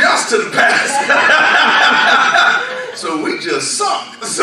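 A man's voice preaching loudly, with chuckling laughter.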